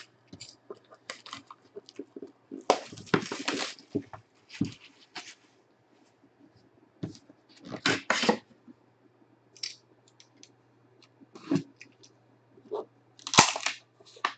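Cardboard and paper handling as a trading-card box is slid out of its sleeve and its lid opened. The sound comes as intermittent rustles and scrapes with short gaps between them. The loudest, sharpest handling noise comes near the end, as the lid comes up.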